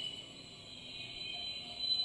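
A faint, steady high-pitched whine made of two thin tones, over low background noise.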